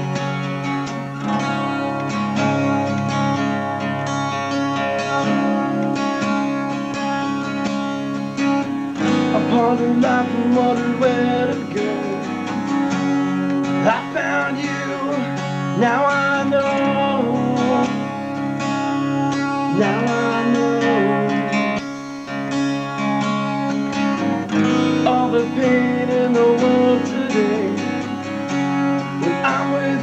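Rock band playing a song live: strummed guitar chords, with a singer coming in about nine seconds in.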